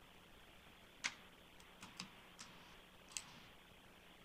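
Near-silent room tone broken by five or six short, sharp clicks spread over a couple of seconds, the first and last the loudest.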